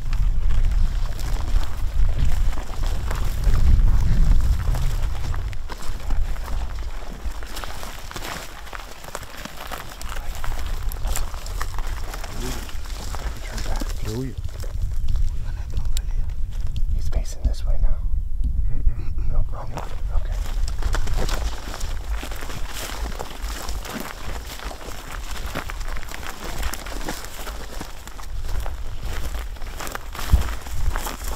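Wind rumbling on the microphone, with the crackle and rustle of dry grass and brush.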